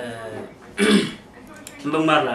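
A man's voice in conversation, with a loud throat-clearing sound about a second in.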